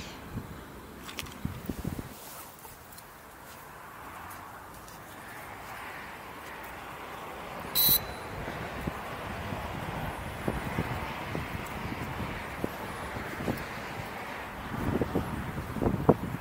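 Rustling and wind on the microphone while a small folding camera drone is turned by hand for compass calibration. One short, high electronic beep sounds about eight seconds in, a calibration signal from the drone kit.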